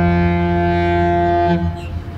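The Disney Dream cruise ship's musical horn holding one long, deep note at the end of a melodic phrase, then cutting off suddenly about one and a half seconds in.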